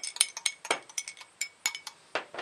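A metal measuring spoon stirred around in a drinking glass of honey water, clinking against the glass in a quick, irregular run of taps, several a second; some taps leave the glass ringing briefly.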